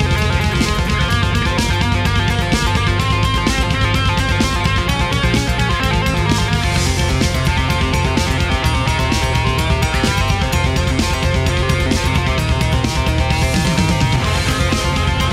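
Thrash metal instrumental passage: electric guitars playing a riff over bass guitar and a steady drum beat, with no vocals.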